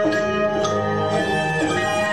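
Cello playing held, bowed notes, with several pitches sounding together over a low bass note.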